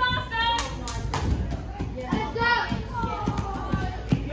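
Children's voices calling out and chattering in a large hall, over a string of light thuds and taps from feet on the training floor.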